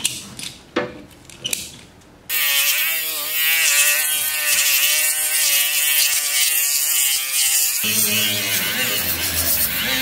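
A few sharp ratchet clicks as a ratchet strap is cinched tight. Then, about two seconds in, a cordless right-angle grinder with a small abrasive disc starts sanding metal and runs on without a break, its whine wavering in pitch. The sound changes about eight seconds in, as the disc works a stainless steel surface.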